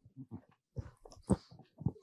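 Faint, scattered knocks and rustles of a microphone being handled, with a louder thump about a second and a half in.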